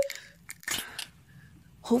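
Close-miked ASMR eating sounds: a few short crunching bites about half a second to a second in, then quiet mouth noise.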